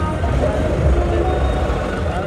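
Tractor diesel engine running steadily while driving, a constant low rumble, with people's voices mixed in.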